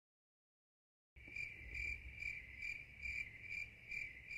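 Cricket chirping: a steady high chirp pulsing a little over twice a second, starting suddenly out of dead silence about a second in, over a faint low rumble.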